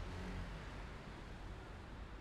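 Steady low rumble of road and engine noise from a car moving at speed.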